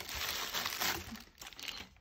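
Clear plastic packaging crinkling in irregular bursts as it is picked up and handled.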